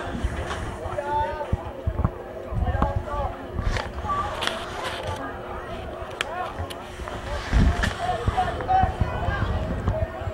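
Distant shouts and calls of players and onlookers across a soccer field, with no words clear, over a low rumble on the microphone and a faint steady hum.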